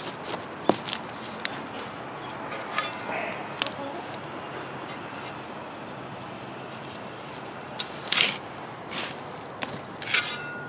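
A garden spade cutting and scraping into clay soil, with scattered knocks and steps on a wooden digging board. The loudest is a rasping scrape about eight seconds in.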